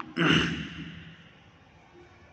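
A man's single breathy sigh just after the start, fading away within about a second and leaving quiet room tone.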